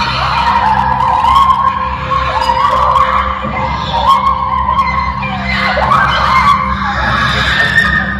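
Women screaming, a string of long high cries that rise and fall one after another, over a low steady hum.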